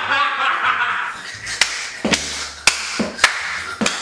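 About six sharp slaps, one after another, starting about a second and a half in: a man hitting a cushion and sofa with his hands in a mock tantrum.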